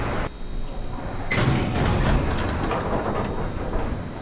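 A freight elevator's sliding metal gate clatters shut with a sudden rattle about a second in, over a steady low rumble.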